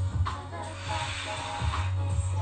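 A long, breathy exhale of about a second and a half as a person rolls up from lying to sitting in a Pilates full roll-up, over background music.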